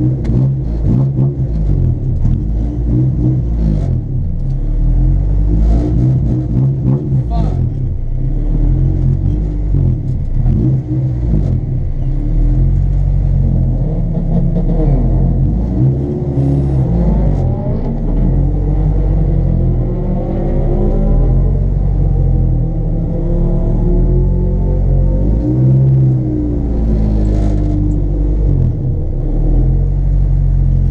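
Honda CRX's engine heard from inside the cabin, running steadily at low speed while the car rolls along, with its revs rising and falling now and then.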